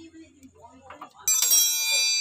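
A sudden bright, bell-like metallic ring starts a little past halfway and keeps ringing steadily with many high overtones.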